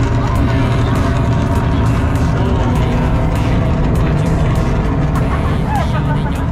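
Recorded rocket-launch soundtrack played loud through a launch-simulator exhibit's speakers: a steady, deep rumble of rocket engines at lift-off.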